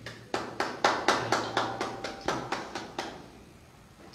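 Hand claps in a steady rhythm, about four a second, stopping about three seconds in.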